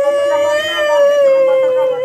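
A woman wailing in grief: one long, held cry at a steady, fairly high pitch that wavers only slightly.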